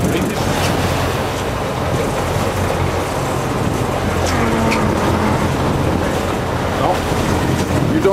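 Sportfishing boat's engines running steadily under loud wind and water noise on the microphone.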